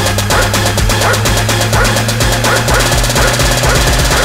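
Electronic dance music mixed live by a DJ, with a steady beat and a held bass tone under it.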